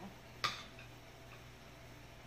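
A single sharp clink of a metal spoon against a ceramic bowl about half a second in, followed by a couple of faint ticks, over a faint steady low hum.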